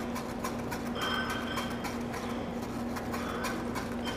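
Metal bar spoon stirring inside a fine-mesh cocktail strainer, giving rapid, irregular light clicks and scrapes as the drink is double-strained into a martini glass. A faint steady hum runs underneath.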